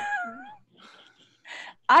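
A woman laughing: a short, wavering voiced laugh followed by a few soft breathy chuckles.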